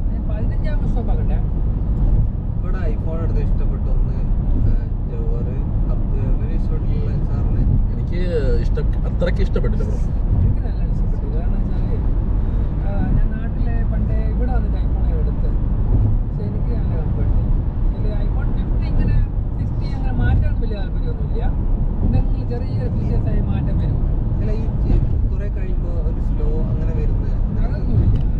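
Steady road and engine rumble inside a moving car's cabin, with voices talking over it throughout.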